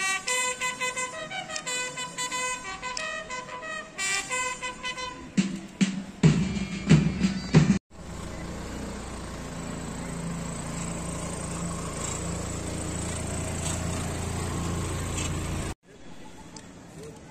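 Band music with held, stepwise notes plays for the first five seconds or so, followed by a louder, rougher passage. After a sudden cut, an open jeep's engine runs with a steady low hum under open-air background noise for about eight seconds, until another sudden cut near the end.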